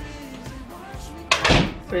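An apartment front door being pushed shut, closing with one loud thud about a second and a half in, over background music.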